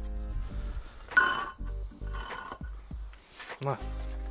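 Background music with sustained chords, and a sharp metallic clink about a second in as metal rigging hardware knocks while the rope is being tied on.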